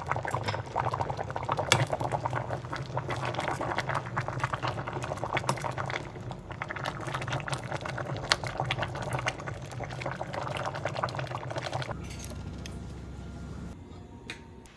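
Tofu-and-mushroom stew bubbling at a full boil in a stainless steel pot: a dense, irregular crackle of bursting bubbles over a low hum. The bubbling stops about twelve seconds in, leaving only the quieter hum.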